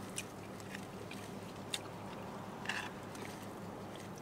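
Faint eating sounds in a quiet car cabin: a few small clicks and scrapes of a plastic fork in a takeout container and chewing, over a steady low cabin hum.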